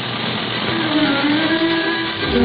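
Steady drone of a radio-drama airplane engine sound effect, with string music beginning to come in under it a little under a second in.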